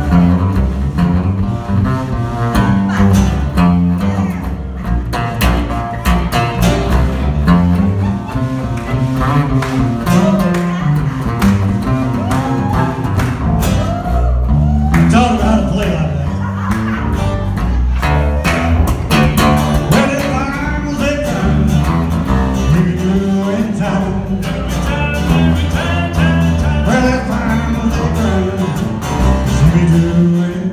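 Instrumental break in a country song: an acoustic bass guitar plays a solo line of low notes over strummed acoustic guitars.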